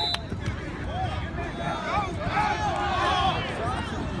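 Several distant voices talking and calling out at once, overlapping, over a low rumbling noise.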